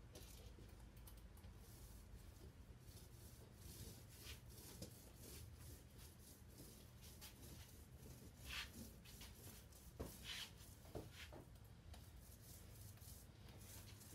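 Near silence: faint scattered knocks, clicks and scrapes of glued wooden strips being handled and set into a jig, over a low steady room hum, with a few slightly louder clicks in the second half.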